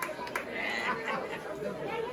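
Chatter of several voices talking at once at moderate level, with no music playing.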